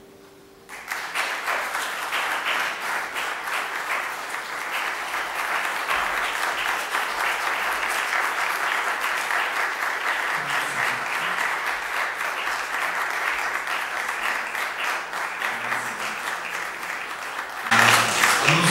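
Audience applauding, breaking out suddenly about a second in once the last piano note has died away, then holding steady.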